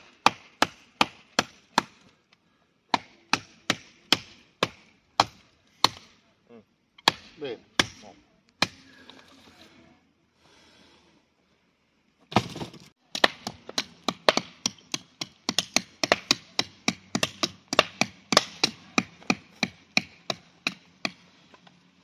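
A large fixed-blade knife chopping into a standing stick of wood, with a series of sharp strikes. There is a pause around the middle, then a faster, dense run of strikes.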